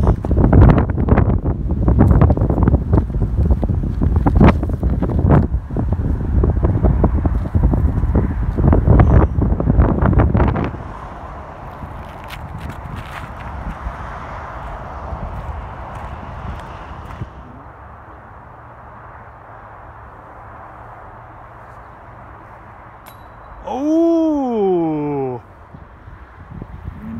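Gusty wind buffeting the microphone: loud and rumbling for about the first ten seconds, then dropping to a softer steady hiss. Near the end a single short voice rises and falls in pitch, like an 'ooh'.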